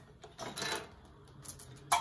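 Galvanized steel electrical boxes clattering as a robot gripper handles them: a scrape about half a second in, a few light clicks, then a sharp metallic clank near the end.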